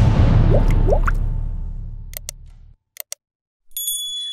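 Intro music sting ending on a loud hit that fades away over about two and a half seconds, with two quick rising swooshes, followed by a few short sharp clicks, the click sounds of an animated subscribe button and notification bell.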